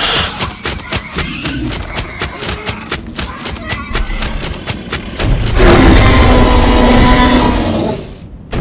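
A run of sharp clicks and thuds, then, about five seconds in, a loud, long bellowing call held on one low pitch for nearly three seconds, in the manner of a large creature's roar.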